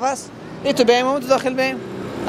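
A man's voice speaking into a handheld microphone, starting after a short pause about half a second in.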